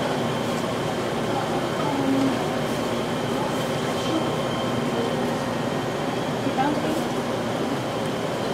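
Steady machine hum with a faint, constant high whine, typical of commercial kitchen equipment or ventilation, with faint indistinct voices in the background.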